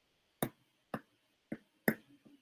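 Four sharp clicks about half a second apart, the last the loudest: a stylus tapping a tablet screen while handwritten notes are being corrected.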